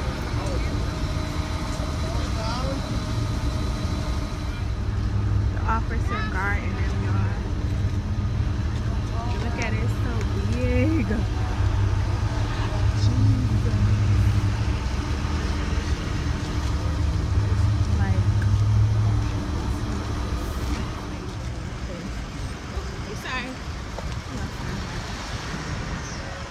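A forklift's engine idling with a steady low drone, louder through the middle and dropping off around three-quarters of the way through.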